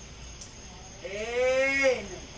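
A voice holding one long drawn-out vowel for about a second, starting about halfway through, its pitch rising slightly and dropping at the end; before it, only a low background hum.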